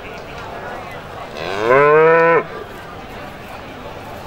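A Limousin cow moos once, loudly: a single call of about a second that rises in pitch, then holds level and stops abruptly.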